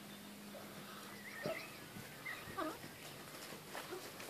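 A horse whinnying: short wavering calls near the middle, the last one falling in pitch, with a dull knock about a second and a half in.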